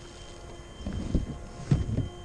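Motorcycle idling faintly at a standstill under low wind rumble on the helmet microphone, with a couple of soft knocks and rustles about a second in and near the end as a gloved hand handles the helmet.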